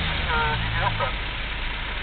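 Engine of a short-wheelbase Toyota Land Cruiser running as the 4x4 pulls away through soft sand, a low steady rumble that grows slightly fainter.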